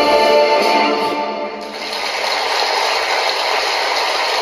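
Instrumental backing music ending on a held chord that fades out about a second and a half in, followed by a steady hiss.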